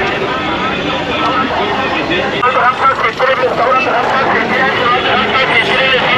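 Busy street traffic, with vehicle engines running and passing close, under the steady talk of many people's voices.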